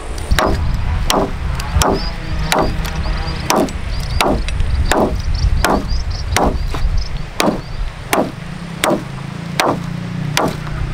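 Machete chopping into a wooden pole in steady repeated strokes, about three blows every two seconds.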